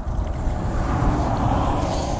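A hooked crappie splashing at the lake surface close to the bank as it is played in, over a steady low rumble of wind on the microphone.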